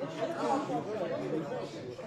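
Chatter: several people talking over one another at once.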